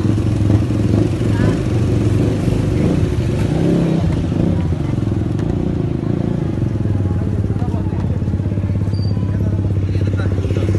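Motorcycle engine running steadily while riding through a town street, with faint voices in the background.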